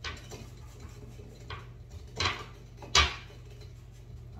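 Four light knocks and clinks of craft tools and tins against a stone countertop, the loudest about three seconds in.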